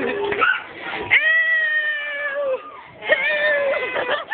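A person's voice giving a long, high-pitched, drawn-out cry lasting about a second and a half, slightly falling in pitch at the end, then a shorter high call near the end.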